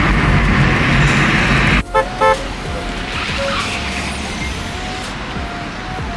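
Loud road and engine noise inside a moving car, cut off suddenly about two seconds in. Two short car-horn toots follow in quick succession, then quieter steady street traffic.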